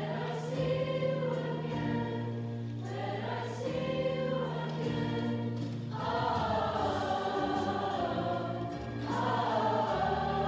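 A mixed middle-school choir singing in parts over held low bass notes that change every few seconds. The voices grow louder about six seconds in and again near the end.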